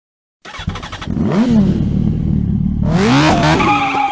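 Motorcycle engine revving: it starts about half a second in, revs up and falls back, runs on steadily, then revs up again near the end.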